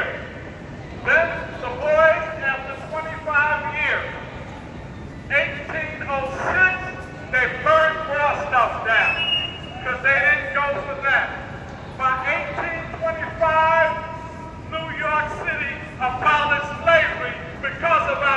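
A man speaking continuously in short phrases with brief pauses, over steady low background noise.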